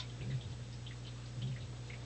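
Faint, scattered high chirps from the fading repeats of a delay pedal's feedback, over a steady low hum from the guitar amplifier rig.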